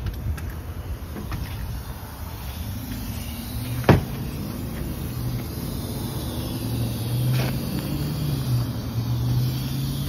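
A car engine running at a steady idle, its low hum swelling a little about seven to nine seconds in. One sharp knock about four seconds in, the loudest sound.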